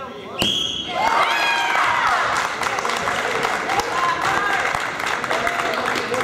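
A sharp slap, then a short, steady referee's whistle blast about half a second in, calling the fall that ends the wrestling match. Spectators and teammates then cheer and shout over one another in the gym.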